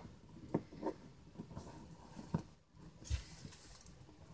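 Faint handling sounds from hands working stiff gingerbread house pieces: a few light taps and rustles as the iced walls are pressed and held together, with a soft low thump about three seconds in.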